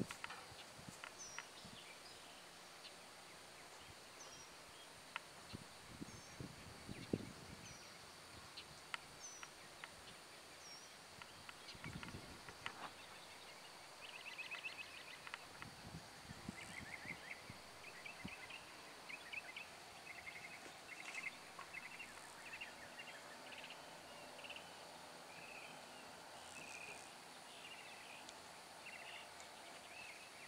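Quiet outdoor ambience with birds calling: a short high chirp repeats about once a second for the first ten seconds, then busier, quicker calls run on from about halfway. A few soft low thuds and rustles come now and then.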